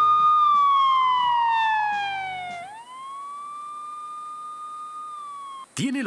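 Electronic tone from a TV programme's title sting, siren-like or theremin-like. It slides down in pitch over the first two and a half seconds while the backing music fades out, then swoops back up and holds. It cuts off just before a man's voice begins.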